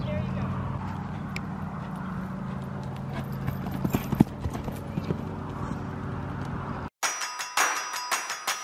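Horse hooves cantering on sand arena footing, with a sharp knock about four seconds in as a horse goes over a ground pole. About seven seconds in the sound cuts out and gives way to music with ringing mallet-like notes.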